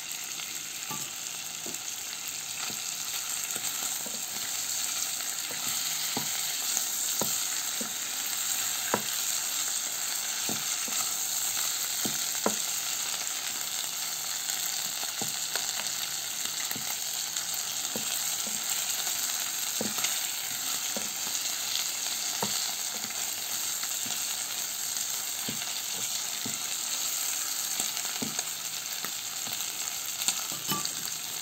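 Marinated pork strips frying in oil in a 2-litre marble-coated electric multi-purpose pot: a steady sizzling hiss with frequent small clicks and pops, while a wooden spatula turns the pieces.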